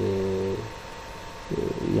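A man's voice holding a long, level hesitation sound, then a short pause with faint room hum, then his voice starting again near the end.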